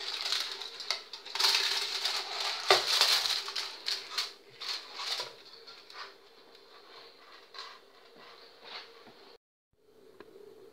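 Aluminium foil crinkling and crackling as a hand presses a foil cover down over a pudding mould inside a steel pot, with one sharp tap a little before the middle. The crackling is densest in the first few seconds and thins to occasional faint crinkles.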